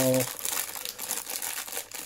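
Clear plastic bag of Lego pieces crinkling and crackling as it is handled in the hands.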